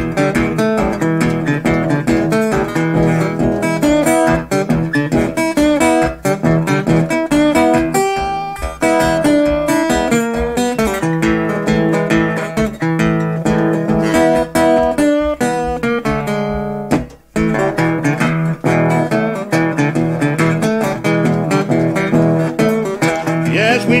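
Piedmont-style acoustic blues guitar played alone between sung verses: a steady bass line under picked treble notes. The playing drops out briefly about seventeen seconds in, and the singing voice comes back at the very end.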